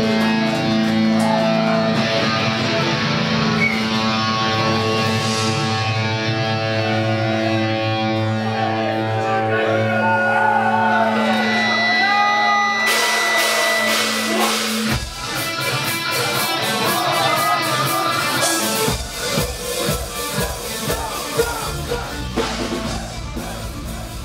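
Folk metal band playing live: a held, droning chord with a melody line wandering over it, which cuts off about fifteen seconds in. A few seconds later a heavy low end of drums and bass comes in.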